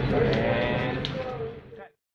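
Indistinct voices over a steady low hum, with a few sharp clicks. The sound fades and cuts to silence just before the end.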